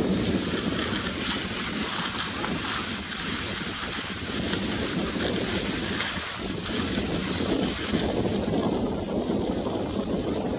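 Wind rushing over the microphone of a camera moving downhill on skis, with the hiss of skis sliding on packed snow.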